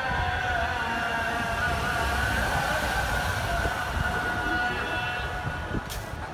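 Islamic call to prayer (adhan) sung from mosque loudspeakers: long, held, wavering vocal notes, several lines of it overlapping, over the low noise of a busy city square.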